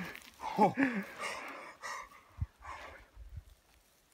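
A man breathing hard in quick, heavy breaths, worked up with excitement just after shooting a deer, following a short exclamation. There is a soft low thump about two and a half seconds in.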